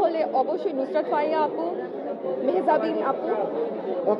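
Speech: a woman talking, with chatter behind her.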